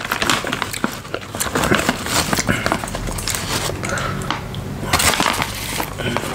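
Crackling of a plastic turkey jerky bag being handled close to the microphone, with many small irregular crinkles and a louder stretch near the end.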